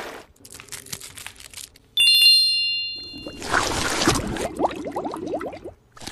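A single bright, bell-like chime rings about two seconds in and fades over a second or so. Soft, wet sounds of gel skincare product being worked on the skin come before and after it.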